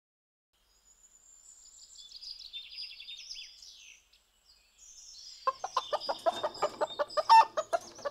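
Hens clucking in a quick run of short clucks that starts about halfway through and is the loudest sound. Before it, from about a second in, small birds chirp faintly in high tweets, a morning ambience.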